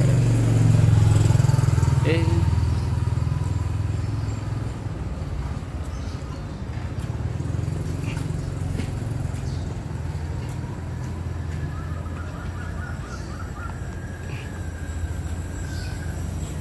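Street ambience in a narrow residential alley: a steady low rumble, loudest in the first few seconds, with faint voices in the distance.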